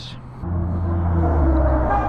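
A car's engine running close alongside, a low steady hum that starts about half a second in.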